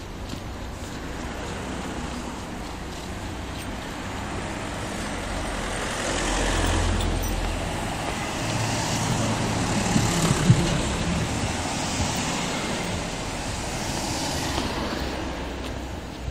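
Road traffic going past close by: a steady wash of passing cars that swells through the middle, with a low engine rumble from a passing vehicle about six to seven seconds in.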